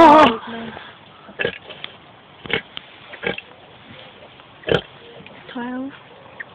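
Newborn piglets squealing beside the sow: a loud wavering squeal at the start, a few short squeaks through the middle, and another squeal near the end.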